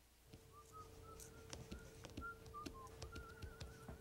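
A person whistling a few faint, wavering notes of a tune, ending in a short warbling trill, over a steady low hum and a few light clicks.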